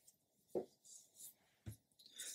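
Faint rustle of a hand moving over a paper instruction sheet, with two brief soft sounds, one about half a second in and one near the end.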